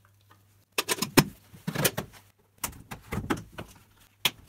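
Plastic parts being handled: a run of short hollow knocks and clicks, starting about a second in, from a vacuum cleaner's plastic dust container and a plastic bucket separator.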